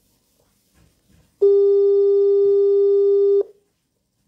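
A single loud, steady electronic tone, about two seconds long, that switches on and off abruptly, like a telephone line tone. Otherwise only faint low sounds.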